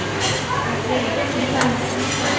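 Indistinct chatter of voices over a steady low hum, with a couple of short clicks, one about one and a half seconds in.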